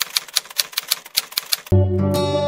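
Typewriter typing sound effect: a quick, even run of key-strike clicks, about six a second, as text is typed out. Near the end it stops and the song's music comes back in.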